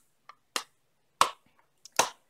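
A few short, sharp clicks and taps spread over two seconds, the loudest about a second in, from makeup items being handled and set down.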